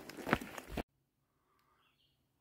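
Footsteps on a gravel trail with a few sharp crunches for under a second, then the sound cuts off suddenly to silence.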